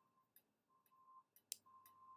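Near silence broken by a few faint, sharp computer-mouse clicks, two of them close together about a second and a half in.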